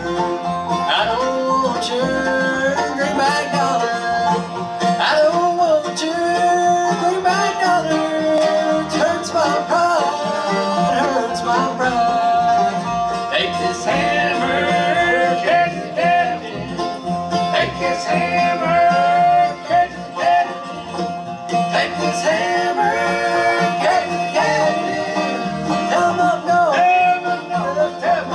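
Bluegrass band playing live: banjo, mandolin, acoustic guitar and upright bass, with voices singing along.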